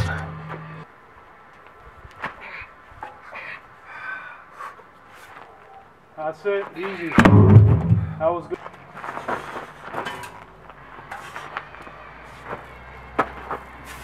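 Men's voices shouting out around the middle, together with a sharp knock and a heavy thud. Lighter scattered knocks fall before and after it.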